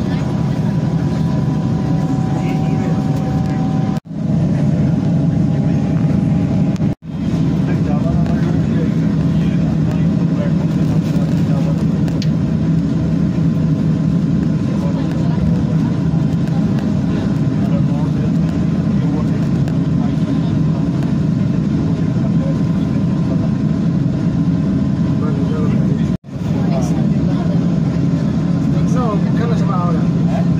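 Passenger train running at speed, heard from inside the carriage: a steady low rumble of wheels and running gear. The sound drops out very briefly three times, about four, seven and twenty-six seconds in.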